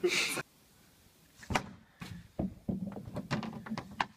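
Hockey stick blade and puck knocking and clicking on a plastic shooting pad: a single sharp knock about one and a half seconds in, then a quick run of short taps from about two seconds on.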